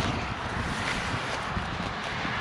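Steady wind noise on the microphone over a steady outdoor background hiss.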